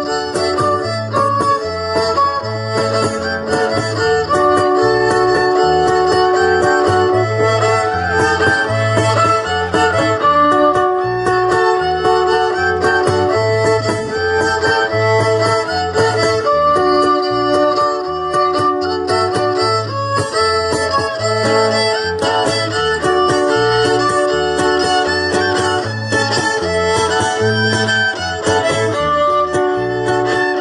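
Traditional dance music from a string band: violin carrying the melody over strummed guitar, with a steady, evenly pulsing bass line.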